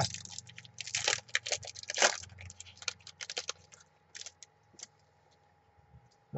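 Wrapper of a trading-card pack being torn open and crinkled by hand: a dense run of sharp crackles from about one to three seconds in, thinning to a few scattered clicks after about four seconds.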